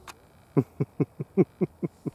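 A man laughing: a run of about eight short, even "ha" bursts, each falling in pitch, at four to five a second.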